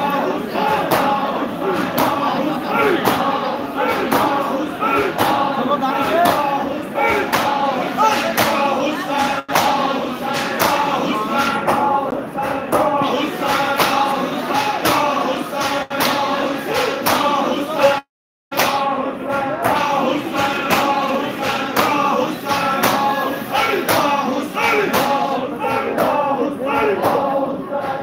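A large crowd of male mourners chanting a noha together, with regular sharp beats of matam (chest-beating) marking the rhythm. The sound cuts out for about half a second about two-thirds of the way through.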